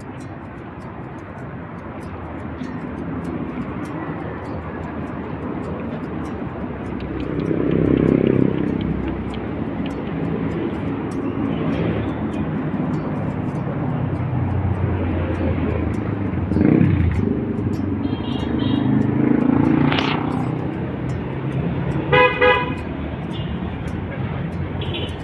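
Street traffic noise that swells and fades as vehicles pass, and near the end a vehicle horn toots twice in quick succession.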